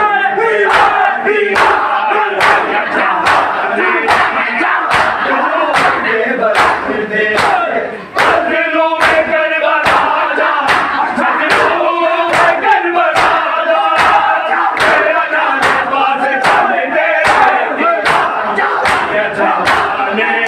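Congregational matam: a crowd of men beating their chests with open hands in unison, sharp slaps at about two a second, under loud chanting and shouting from many men's voices. The beating breaks off briefly about eight seconds in and then resumes.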